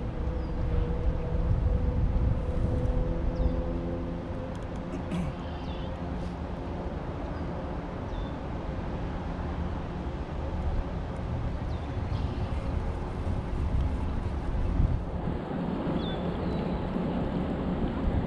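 Wind buffeting the microphone of a kayak's bow-mounted camera, a steady low rumble. A faint steady engine hum runs through the first half or so, and a few short high bird chirps come now and then.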